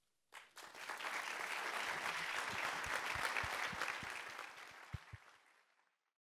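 Audience applause, starting about half a second in, swelling quickly, then fading out near the end, with a few low thumps among it.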